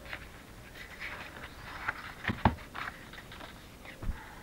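A strip of patterned paper being handled and shifted across a craft mat, with soft rustles and a couple of sharp taps about halfway through.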